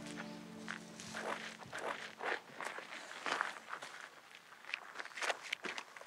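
Footsteps on gravel: about ten irregular, soft steps, with background music fading out at the start.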